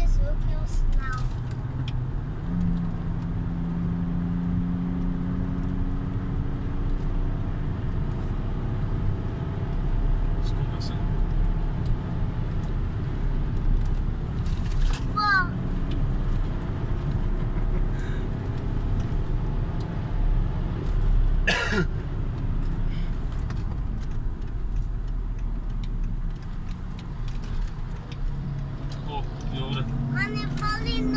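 Car engine and tyre noise heard from inside the cabin while driving at speed, the engine note shifting up and down with the revs. A sharp click about two-thirds of the way through.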